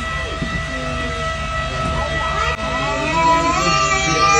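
A tour boat's motor running steadily: a constant high whine over a low rumble, with people's voices faintly over it.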